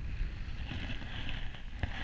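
Airflow of a paraglider in flight buffeting the camera microphone: a steady low rumble with a hiss over it. There is one small click near the end.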